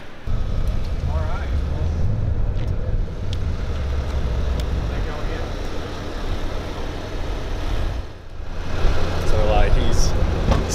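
Ram heavy-duty pickup's 6.7-litre Cummins turbo-diesel idling, a steady low rumble that drops away briefly about eight seconds in.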